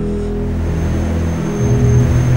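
A low, steady ambient drone of held tones that shifts to a deeper, louder hum about one and a half seconds in.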